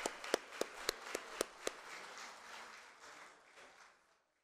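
Applause: a few sharp hand claps close by, about four a second, over scattered clapping that dies away over the next few seconds.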